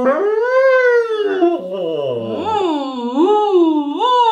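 Two people singing a sustained 'oh' into paper coffee cups sealed over their mouths, sliding up and down in pitch in small loops, with one voice gliding down low in the middle. This is a semi-occluded vocal warm-up exercise.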